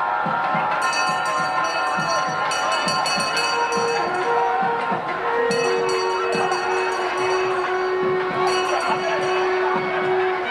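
Temple procession music of nadaswaram and thavil: drum strokes a few times a second under long held reed-pipe notes. Bells ring in two stretches, from about a second in and again from about five and a half seconds, over the noise of a large crowd.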